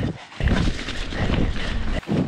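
Wind buffeting the camera microphone as a mountain bike picks up speed down a dirt drop-in, with the tyres and bike rattling over the trail. The rush comes in about half a second in and stays loud.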